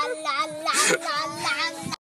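A high singing voice with wavering held notes over a steady accompanying tone, cutting off suddenly at the end.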